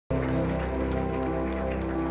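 A worship band holding a steady sustained chord, with light, scattered hand claps over it.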